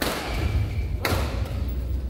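Badminton rackets striking the shuttlecock in a rally, two sharp hits about a second apart that ring briefly in the hall, over a steady low rumble.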